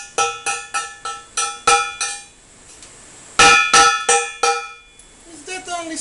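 Hammer striking a steel argon gas cylinder, about three blows a second, each blow leaving the bottle ringing with a metallic tone. After a short pause about two seconds in, a second, louder run of blows follows.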